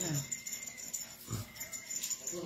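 A man's short low grunt of pain while his forehead is being pinched.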